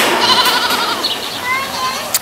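Young goat bleating with a wavering, quavering voice, followed by a short rising call near the end.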